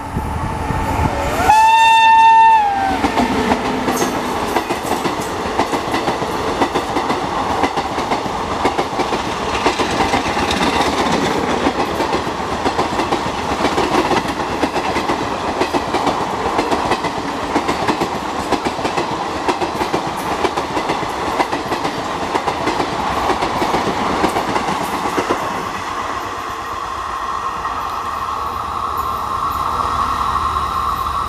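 A WAP-5 electric locomotive's horn sounds once for about a second near the start, sliding up into a held note and bending down as it ends. Then the ICF coaches of the express rush past with a clickety-clack of wheels over rail joints for about twenty seconds, easing off as the train draws away.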